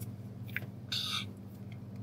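A pause between spoken phrases: a faint steady low electrical hum on the recording, with a tiny click and then a short soft hiss of the speaker's breath about a second in.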